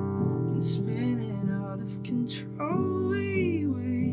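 Held chords played on a software instrument from a MIDI keyboard, with a man singing a melody line over them twice, the singing falling away in between.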